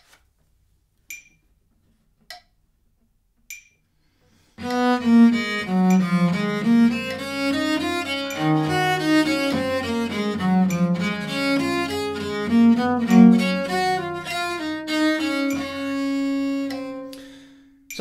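A phone metronome clicks about once every 1.2 seconds, set to crotchet = 50 for slow practice. About four and a half seconds in, a bass viola da gamba begins a bowed passage of running notes at that slow practice tempo. It ends on a long held note that fades away.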